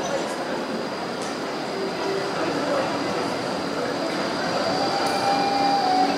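A Melbourne tram running past on the street: a steady rolling rush with a thin, high, steady whine.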